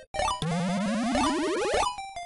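Playful background music: a note slides steadily upward in pitch for about a second and a half, then short stepping notes resume near the end.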